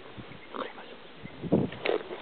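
Rustling thumps from a landing net holding a freshly landed herabuna on the grass: a few irregular thumps, the loudest about one and a half seconds in.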